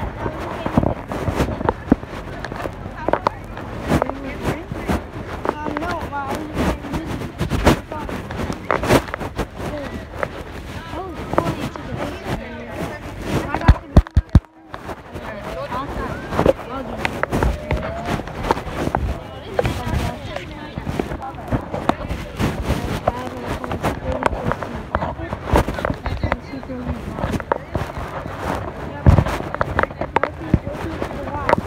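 Indistinct voices talking, with frequent knocks and rubbing from fingers handling the phone over its microphone; a burst of loud knocks about halfway through is followed by a moment where the sound drops out.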